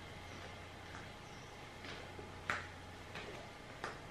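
Tarot cards being laid down one by one onto the table: four short soft snaps spaced about half a second apart in the second half, the second the sharpest, over a faint steady hum.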